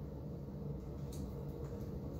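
Quiet room tone: a steady low background hum with one faint tick about a second in.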